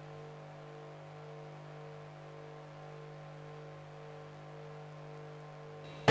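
Steady low electrical hum with a buzzy stack of overtones and a faint tone pulsing about twice a second: mains hum on the broadcast audio feed with no programme sound over it.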